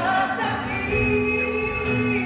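Live church worship band playing, with voices holding long sung notes over the instruments, heard from the audience in a large hall.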